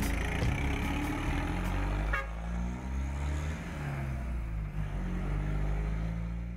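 A box truck's diesel engine pulling away and driving off. The engine note rises and falls in pitch, and the sound eases slightly toward the end as the truck moves off.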